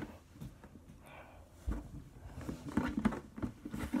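Nearly empty plastic glue jug being squeezed and handled over a glass tabletop: quiet at first, a single soft thump a little before halfway, then a run of small clicks and knocks.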